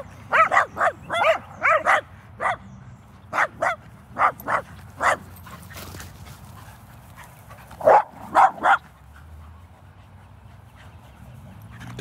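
Dog barking during rough play with other dogs: a quick run of short, sharp barks over the first five seconds, then two or three louder barks about eight seconds in.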